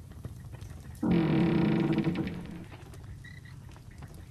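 A short, low, sustained musical note or chord, like a horn or drone. It comes in suddenly about a second in, holds for about a second and fades away, over a low background rumble. It serves as a scene-change sting in an audio drama.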